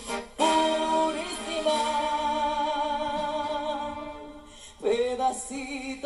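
Live porro band music: a female singer holds one long wavering note over sustained brass chords. The sound dips and a new phrase attacks about five seconds in.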